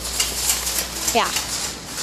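Mostly speech: a single short "yeah" about a second in, over the hiss of a busy store and faint clicks of the moving phone.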